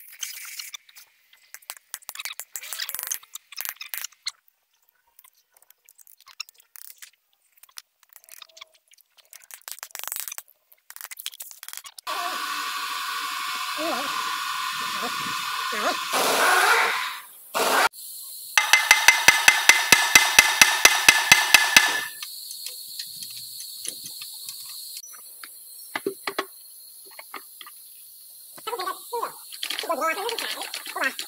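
Metal parts of a loader gearbox being handled and fitted by hand, with scattered clicks and clinks. About midway there are several seconds of steady hiss, then a rapid rattle of about six beats a second from a power tool for about three seconds.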